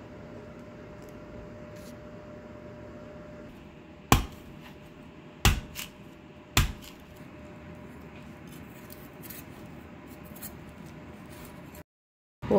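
A large knife chopping the husk off a tender green coconut on a plastic cutting board: four sharp chops over about two and a half seconds, starting a little after four seconds in, then lighter taps and clicks. A faint steady hum comes before the chops.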